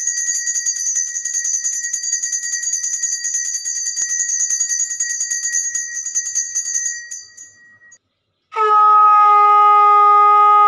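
Puja hand bell rung rapidly with a high, bright ring for about seven seconds before it fades out. After a brief pause, a conch shell (shankha) is blown in one long, steady note starting near the end.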